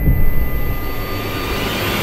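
A cinematic riser in a teaser soundtrack: a whooshing, jet-like noise over a low rumble that climbs steadily in brightness and loudness. A heavy thump sits at the very start.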